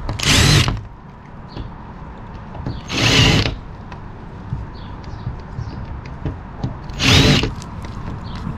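Cordless drill boring pilot holes into wood siding, in three short bursts of about half a second each: one at the start, one about three seconds in and one about seven seconds in.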